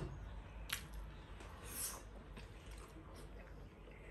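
Faint wet eating sounds of a person chewing a mouthful of fish, with a small click a little under a second in.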